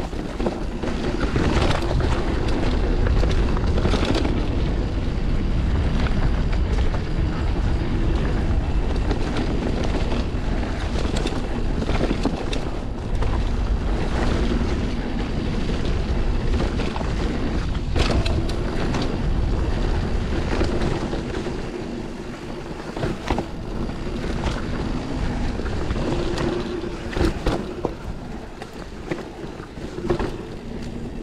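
Wind rushing over the microphone and mountain-bike tyres rolling on a dirt trail during a descent, with frequent sharp clicks and knocks from the bike rattling over bumps and roots. It eases off somewhat in the last third, where a few louder knocks stand out.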